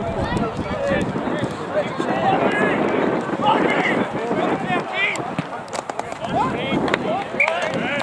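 Several voices talking and calling over one another: indistinct chatter of spectators and players at a rugby match.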